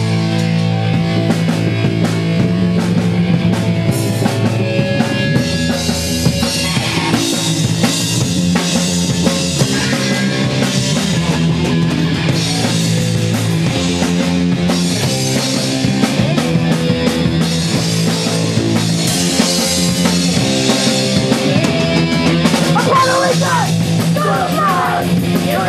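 Punk band playing live and loud: distorted electric guitar, bass and a pounding drum kit in an instrumental stretch. Shouted vocals come back in near the end.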